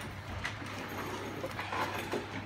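A few light knocks and clinks of the snow machine's casing and parts being handled, over a steady low hum.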